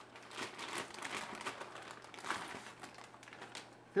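Plastic anti-static bag crinkling and rustling in irregular bursts as a graphics card is slid out of it.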